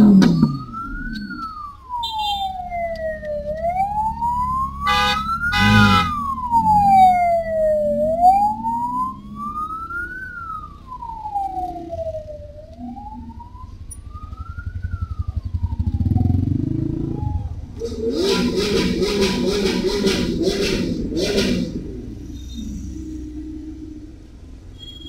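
A wailing siren rises and falls about every four and a half seconds, then fades away after about sixteen seconds. Car engines run underneath it. Near the end there is a harsh, pulsing, honk-like tone.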